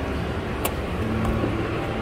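Steady low rumble of a moving escalator amid mall hubbub, with one sharp click about two-thirds of a second in.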